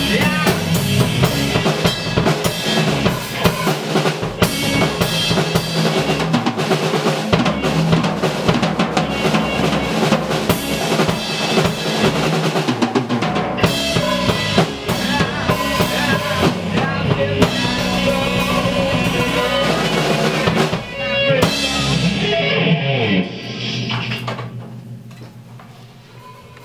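A small band rehearsing live in a room, with a drum kit and bass guitar playing together. The song winds down about 22 seconds in, and the sound fades away near the end.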